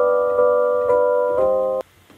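Synth keys playing a simple chord progression, the chords struck about twice a second, cutting off suddenly near the end.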